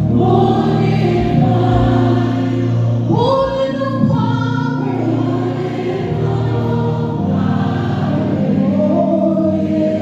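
Live gospel worship singing in Twi: a female lead vocalist with backing singers and a live band, the voices holding long notes and sliding up in pitch about three seconds in.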